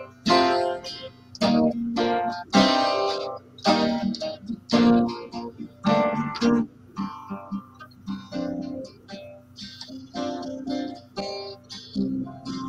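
Acoustic guitar being strummed, a series of chords in a loose rhythm with no singing. The strums are fuller and louder in the first half and lighter toward the end.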